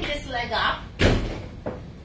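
Talking voices, then a single sharp thud about a second in, followed by a fainter knock about half a second later.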